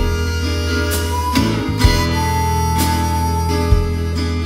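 Blues band in an instrumental break: a harmonica holds long notes over acoustic guitar and bass, with a drum hit about every two seconds.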